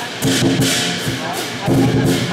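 Lion dance percussion: a large Chinese lion drum beaten with clashing cymbals, with heavier strokes about a quarter second in and again near the end.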